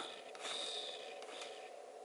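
Faint whir of a camera's lens motor refocusing, with a couple of small clicks, over a low steady hum.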